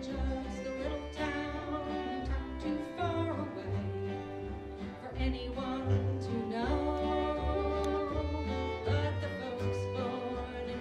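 Live acoustic folk string band playing a song: fiddle bowing the melody over strummed acoustic guitars and a plucked upright bass line, with singing.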